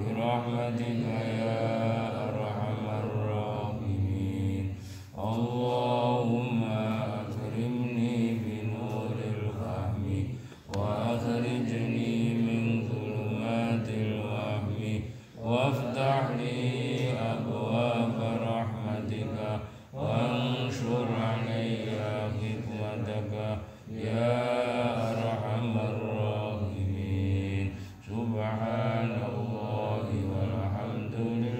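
Islamic religious chanting: a melodic recitation sung in long phrases of about four to five seconds, each followed by a brief pause for breath.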